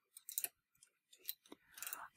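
Faint, light metal clicks of a latch tool's hook catching on the steel needles and latches of a Brother knitting machine as yarn loops are pulled through, a few scattered ticks.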